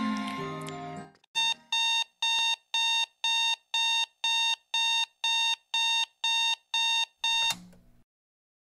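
Digital alarm clock beeping, a steady electronic beep about twice a second, cut off by a sharp knock near the end as a paw hits the clock. The tail of background music fades out in the first second.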